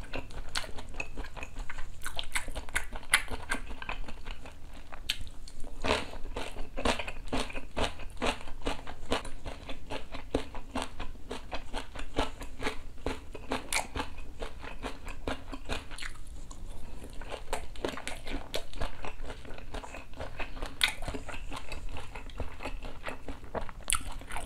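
Close-miked eating: a person chewing crispy shredded-potato pancake and kimchi, a dense run of sharp crunches with a brief lull past the middle.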